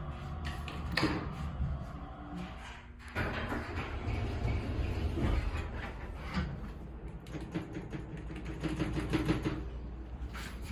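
Schindler hydraulic elevator coming to a stop, its steady hum cutting off about three seconds in, then its car doors sliding open with a rattle and clicks.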